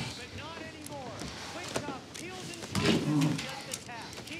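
A man's low, wordless grunts and groans, with a few soft knocks.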